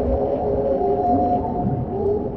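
Dark ambient sound-design drone: several sustained, slightly wavering tones held over a low rumble at a steady level.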